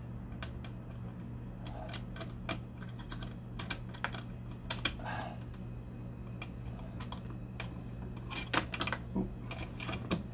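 Irregular small clicks and taps of a hex key working the set screw in the base of a chrome car side mirror, metal ticking on metal, with a quick cluster of clicks near the end.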